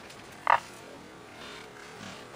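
A single short, sharp knock of small hardwood cubes striking each other about half a second in, over quiet shop background.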